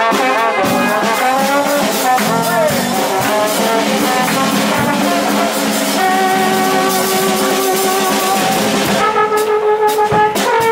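Live jazz from a trombone, saxophone and drum kit: the horns play the melody over drums and cymbals. There is a sliding note a few seconds in and long held horn notes in the second half.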